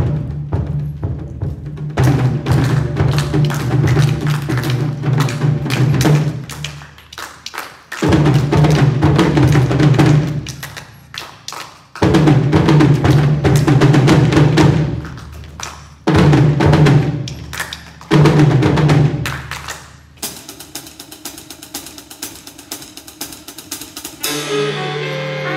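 School wind ensemble with saxophones, brass and timpani playing a driving, percussion-heavy passage in irregular rhythms. Loud blocks of sustained low notes and drum hits break off and come back in sharply every few seconds, and the last few seconds are quieter, with rapid light strokes.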